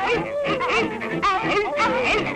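A pack of cartoon foxhounds yelping and baying all at once, many wavering cries overlapping, with music underneath.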